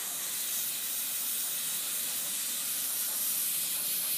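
Dental air syringe blowing a steady hiss of air over a tooth, thinning the bonding agent and evaporating its solvent.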